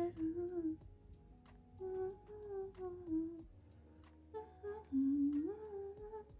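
A woman humming a tune with her mouth closed, in several short phrases with pauses between them; the melody climbs to a higher note near the end.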